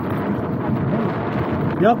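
Steady rushing noise of splashing water, with wind on the microphone.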